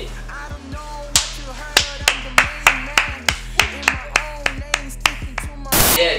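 Background music with a steady low bass, over which a run of sharp claps sounds about three times a second for several seconds. A short, loud noise burst comes just before the end.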